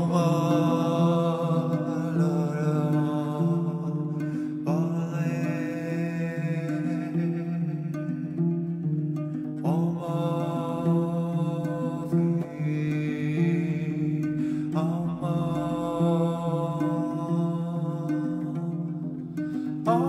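Kamele ngoni (African harp) playing a repeating low plucked pattern under long wordless sung notes. A new note begins about every five seconds, each sliding up into pitch.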